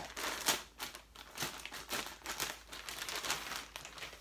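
Packaging crinkling and rustling in irregular bursts as a folded beach towel is handled and unwrapped, loudest about half a second in.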